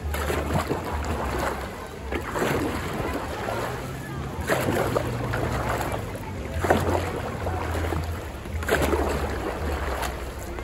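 Dragon boat paddle strokes in pool water: the blade catches and pulls through with a splash about every two seconds, five strokes in all, over a low rumble of wind on the microphone.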